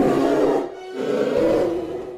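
An animal roar sound effect over music, heard as two loud roars: one at the start and another from about a second in, with a short break between them.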